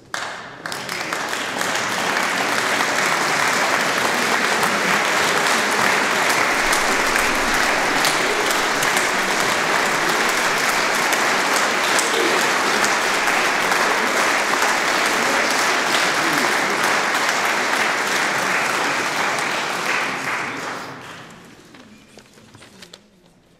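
A concert audience applauding steadily, starting suddenly and dying away over the last two seconds.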